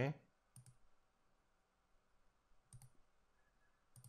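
Faint computer mouse clicks: a short click about half a second in and a quick double-click a little under three seconds in, used to open folders in a file dialog.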